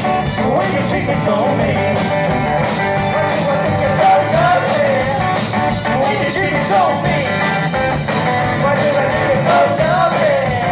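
Live Cajun band playing loud, steady music on a button accordion, acoustic guitar, bass guitar and drum kit.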